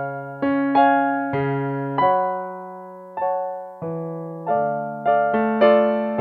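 Piano accompaniment to a tango, played alone without the flute part: chords and bass notes struck in a syncopated rhythm, each one fading away after it is hit.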